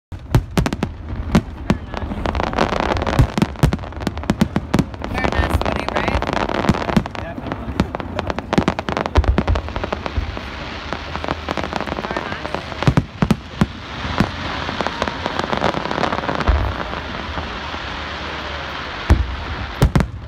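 Aerial fireworks shells bursting with sharp bangs in rapid clusters, densest in the first several seconds, then sparser with a single strong bang near the end. A continuous haze of noise sits under the bangs.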